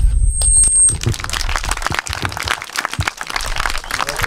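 The last guitar chord rings out briefly, then from about a second in, a small group of listeners claps steadily at the end of the song.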